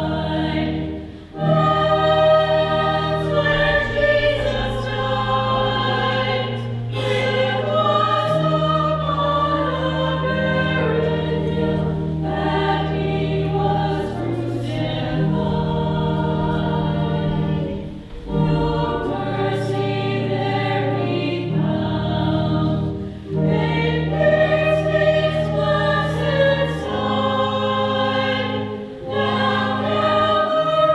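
A hymn sung by a group of voices over long-held low accompanying notes. The singing breaks off briefly between phrases three times: about a second in, midway, and near the end.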